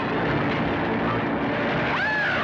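Steady, loud engine and rushing noise of a small motor vehicle speeding along, as heard on an old film soundtrack.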